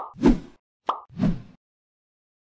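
Animated end-screen sound effects: two short pops, each followed by a quick swoosh, in the first second and a half.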